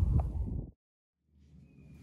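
Mostly near silence. A low wind rumble on the microphone cuts off abruptly under a second in. A faint low hum creeps in near the end.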